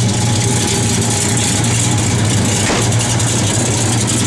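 1970 Dodge Charger R/T's 440 V8 idling steadily through Flowmaster dual exhaust.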